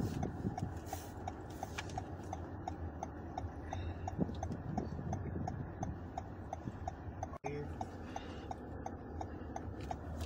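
A car's turn-signal indicator ticking steadily, about three ticks a second, over the low hum of the car's engine inside the cabin. The sound cuts out for an instant about seven seconds in.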